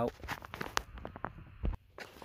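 Irregular light clicks and taps of hands and a tool handling plastic trim and wire in a car footwell, with one sharper tick a little before the middle and a dull knock near the end.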